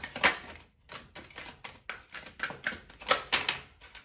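Tarot cards being shuffled by hand: an irregular run of quick papery clicks and snaps as the cards slide against one another.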